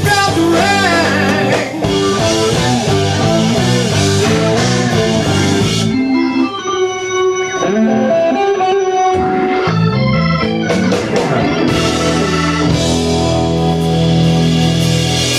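A live rock band plays an instrumental passage of electric guitar and Hammond-style organ over bass and drums. About six seconds in, the drums drop out and a few held notes ring for three or four seconds. The full band then comes back in.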